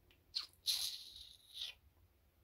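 A short high squeak that drops in pitch, then a hissing breath of about a second, like air drawn sharply through the teeth.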